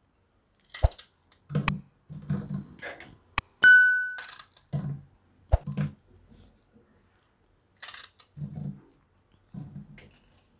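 Pieces of peeled raw banana dropped one by one into an empty pressure cooker pot: a series of soft thumps and sharp knocks on the metal, with one ringing metallic ding about three and a half seconds in.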